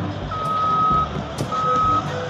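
Articulated dump truck's reversing alarm: two long beeps at one steady pitch, over a low rumble.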